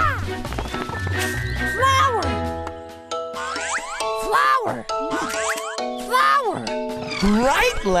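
Children's cartoon background music, with a cartoon voice making wordless swooping sounds about five times, each rising and falling in pitch.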